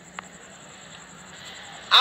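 Low steady background hum and hiss during a pause, with a single short click about a fifth of a second in.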